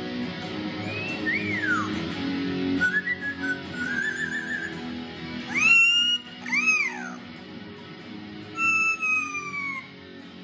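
Yellow-headed amazon parrot whistling and calling over a steady Hamer electric guitar part. It gives a rise-and-fall whistle, then a short warbling trill, then two loud arching calls about halfway through, and a long falling whistle near the end.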